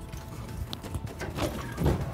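Background music over a pickup tow truck driving, with a series of knocks in the second half, the loudest just before the end.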